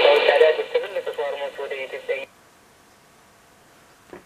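A voice from a shortwave broadcast station in an unidentified language, heard through the loudspeaker of a home-built shortwave receiver with its sharp IF filter switched in. It sounds narrow, with no high treble. It cuts off abruptly about two seconds in, leaving faint hiss.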